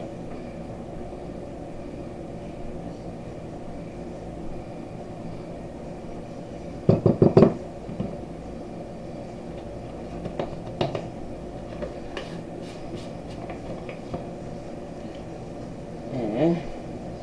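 Kitchen utensils being handled at a countertop while cornstarch is measured onto sliced raw pork in a ceramic bowl: a brief, loud clatter of knocks about seven seconds in, then a few light clicks, over a steady low room hum.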